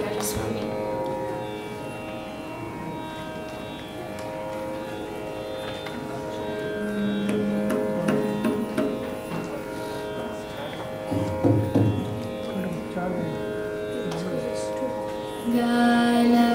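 Carnatic violin playing slow, gliding introductory phrases in raga Ganamurti over a steady shruti drone. A voice joins briefly around the middle and again near the end as the song begins.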